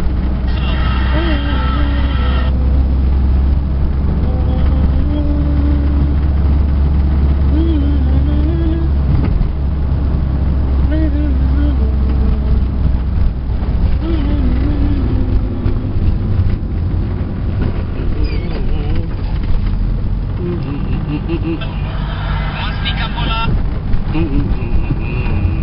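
Steady low rumble of a car's engine and road noise heard inside the moving car's cabin, with muffled voices talking over it.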